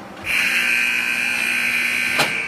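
Ice rink's scoreboard horn sounding a loud, steady, held tone, starting about a quarter second in: the signal for the end of the period.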